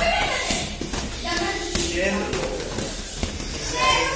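Dull thuds of boxing-gloved punches landing on a partner's covering gloves and headgear in ground-and-pound drilling, under voices in the gym hall.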